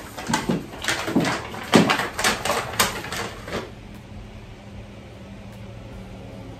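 Handling noises as items are picked up and moved: a quick run of rustles, scrapes and knocks over the first three and a half seconds. After that, only the steady hum of an electric room fan.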